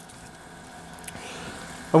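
A pause between a man's sentences, filled only by faint steady background noise; his voice comes back right at the end.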